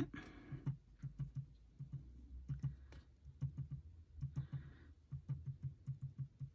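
Round foam ink dauber tapped repeatedly onto paper on a cutting mat, dabbing yellow ink onto the edges: a steady run of soft, light taps, about four a second.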